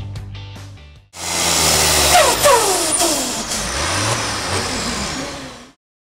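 Music fading out. About a second in, the loud engine of a tractor-pulling tractor starts, running hard with its pitch sliding down, and it cuts off abruptly near the end.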